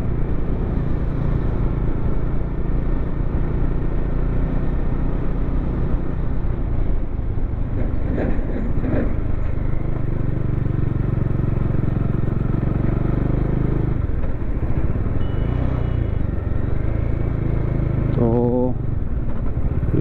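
Bajaj Dominar 400's single-cylinder engine running steadily while the motorcycle cruises along an open road, with wind and road noise over it. The engine note changes once partway through.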